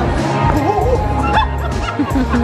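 Music with a heavy bass beat, with a wavering high-pitched voice-like sound sliding up and down over it for about a second near the middle.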